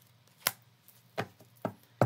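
Tarot cards being handled and set down on a table: a few sharp taps, roughly half a second apart.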